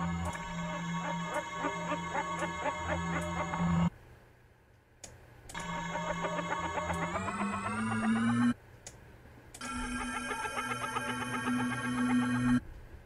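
A sample played back through a software sampler: three sustained, buzzy pitched tones a few seconds each, with short silences between. The second rises in pitch partway through and the third holds at the higher pitch.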